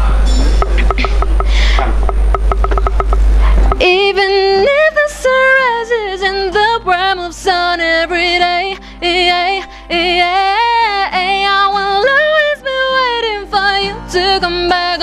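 A run of light, evenly spaced clicks over loud rough noise, then about four seconds in a woman starts singing a slow, melodic line with an acoustic guitar accompaniment.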